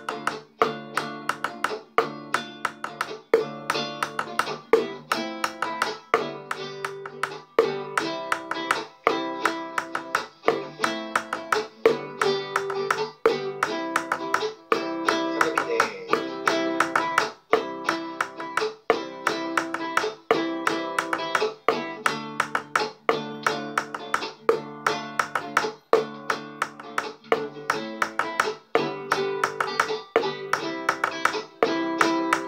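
Acoustic guitar backing track strumming chords in a candombe rhythm. Over it, a steady pattern of sharp taps from two paintbrushes striking an upturned plastic cup and a plastic container, one higher-pitched and one lower.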